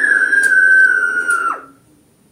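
A single high-pitched whistle-like note, held steady and sinking slightly in pitch, that cuts off sharply about a second and a half in.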